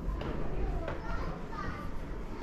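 Indistinct children's voices talking and calling, over a steady low rumble.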